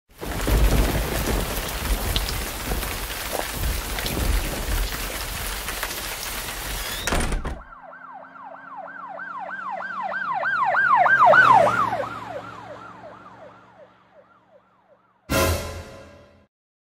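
About seven seconds of dense rushing noise with low rumbling, then a siren in a fast yelp, about four sweeps a second, that grows louder and then fades away. A short low hit comes near the end.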